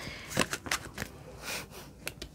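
Tarot cards being shuffled and handled: a few short card flicks and slaps, the loudest about half a second in, and a brief rustle near a second and a half in.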